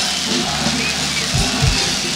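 Live band playing an Arabic pop song, with two heavy bass-drum beats close together near the end.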